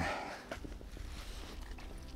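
Faint footsteps of rubber boots stepping through wet, boggy mud and shallow water.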